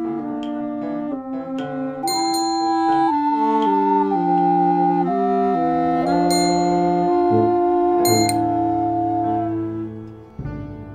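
Instrumental music from a small ensemble of brass and woodwinds: held chords under a slow melody, with a few bright metallic percussion strikes. It fades down near the end.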